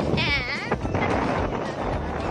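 A short, high, quavering bleat-like cry lasting about half a second near the start, over the steady noise of a vehicle ride.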